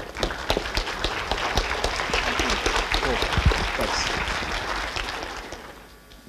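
An audience applauding with many hands clapping at once, steady and then dying away over the last second.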